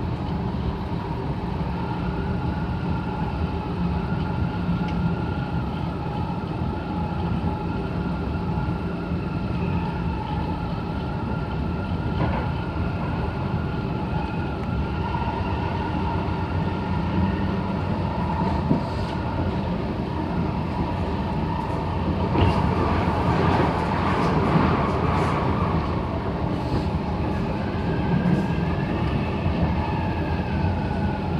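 Inside a Kawasaki C751B metro train running at speed: a steady rumble of wheels on rail, with a few steady whining tones over it. About two-thirds of the way through, the noise grows louder for a few seconds, with a rapid rattle of clicks.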